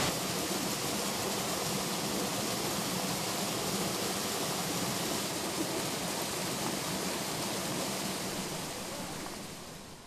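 Fast mountain river rushing over rocks: a steady, even roar of white water that fades out near the end.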